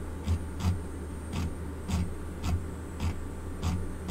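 A computer mouse clicking as a web page is scrolled: a series of short, light clicks, irregular at about two a second, each with a soft low thump. Underneath is a steady low hum.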